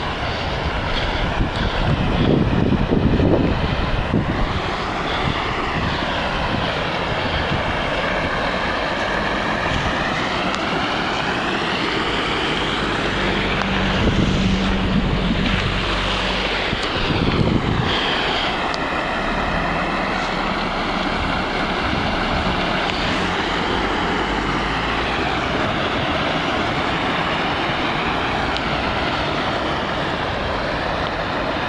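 Steady rushing of storm water bubbling up through a flooded street's storm-drain manhole, a storm sewer overloaded after heavy rain. It swells louder twice, near the start and around the middle.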